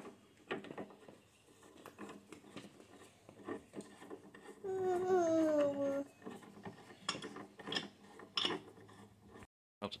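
Light metal clicks and clinks as the steel feed handles of a drill press are screwed into its hub, scattered through the whole stretch. About halfway through, a toddler makes a drawn-out falling 'mm' sound lasting about a second.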